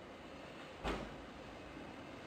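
A power rocker switch on a transmitter's front panel clicks on once, about a second in, with a short low thump; otherwise faint room tone.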